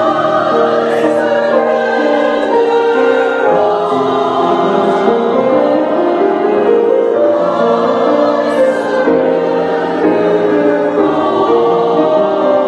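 Church choir singing in several parts at once, on long held notes that move in steps.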